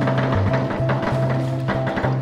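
Music with a steady beat: a bass line changing note several times a second over drums.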